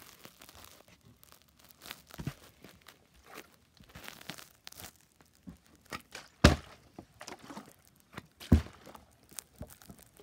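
Partly filled plastic water bottle being flipped and landing on carpet: soft thuds, the two loudest in the second half, with quieter knocks and handling noise between.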